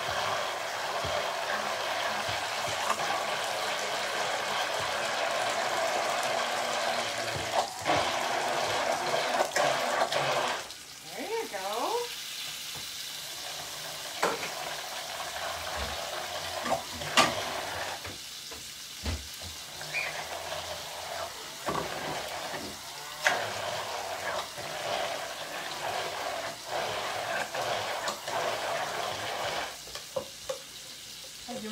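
Immersion blender running in a cup of oil and egg as it is worked slowly up and down to emulsify mayonnaise, louder for the first ten seconds or so, then quieter, with a few sharp knocks of the blender against the cup. A hot grill sizzles underneath.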